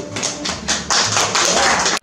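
Audience applause, a dense patter of many hands clapping right after a string-band tune ends, stopping abruptly at the end.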